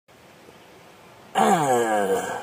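Faint background hiss, then about a second and a half in a man's voice lets out a loud, drawn-out vocal sound that slides down in pitch.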